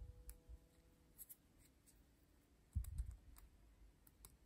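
Faint clicks and handling noise from fingers working a small 3D-printed resin part, with a low bump about three quarters of the way through.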